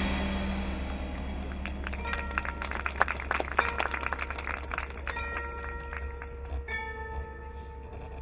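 Marching band music in a soft passage. The full band's loud chord dies away at the start, then mallet percussion plays many quick struck notes, followed by a few held, ringing bell-like notes in the second half.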